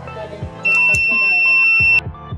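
Buzzer of an LM358 thermistor fire-alarm circuit sounding one steady, high-pitched tone. It starts about two-thirds of a second in and cuts off abruptly, with background music underneath. The alarm is set off by a lighter's heat on the thermistor.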